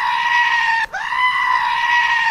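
Goat screaming: two long, loud, level bleats, the first breaking off just before a second in and the second starting right after.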